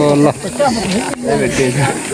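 People's voices outdoors: a drawn-out vocal call that ends just after the start, then overlapping talk from several people over a steady hiss, with one sharp click a little past a second in.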